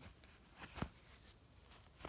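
Near silence, broken by a few faint, short clicks of fingers handling copper pennies on a cloth, the clearest a little under a second in.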